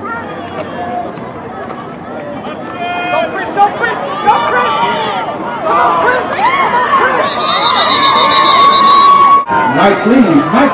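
Football crowd in the stands shouting and cheering, many voices overlapping and building louder as the play develops. Near the end a long high note is held over the noise, then the sound cuts off abruptly.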